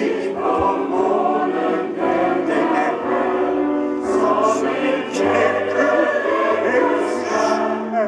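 A large mixed choir of men and women singing together, with sharp sibilant consonants cutting through now and then.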